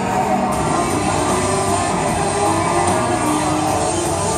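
Music playing in a large hall, with a crowd's chatter underneath.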